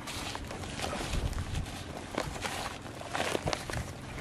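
A hand kneading and rubbing dry, crumbly fishing bait against a woven plastic sheet: an irregular gritty crackle and rustle with uneven small peaks.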